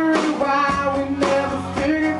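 Live rock band playing: electric guitar, bass guitar and drums under a male lead vocal, with sharp drum hits near the start and about a second later.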